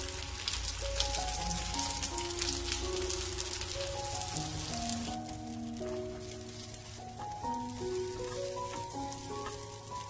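Egg-battered round zucchini slices sizzling in cooking oil in a frying pan, over background music with a slow melody. The sizzling crackle is loud for the first five seconds, then drops suddenly to a quieter sizzle.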